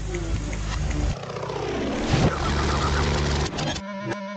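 Cartoon sound effect of a propeller plane's engine running with a steady low drone, with a falling swoop about halfway through; the engine sound cuts off just before the end.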